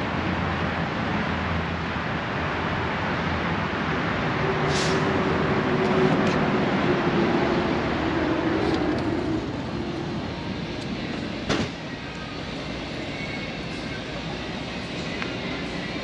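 Steady outdoor rush of wind and traffic on the microphone, with a faint hum passing through. About eleven seconds in, a glass entrance door shuts with a sharp click, and the sound drops to a quieter indoor background.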